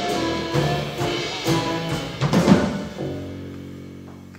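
Live band of accordion, acoustic guitar, double bass and drum kit playing the closing bars of a song: a few loud drum hits, then a final held chord that fades out.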